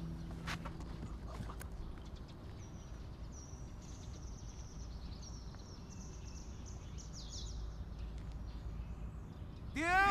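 Faint outdoor ambience: short high bird chirps over a low steady rumble. Just before the end, a much louder sound with several pitched tones sweeping up and down begins.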